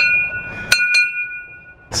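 Small wall-mounted bell rung by its pull cord: three strikes, the second and third close together under a second in, with a clear ringing tone that carries on between them and then stops suddenly.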